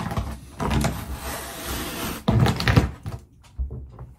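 An old peel-and-stick bath mat being pulled off a bathtub floor by hand, its adhesive peeling away and the mat crinkling and rustling in several irregular bursts, loudest a little past two seconds in.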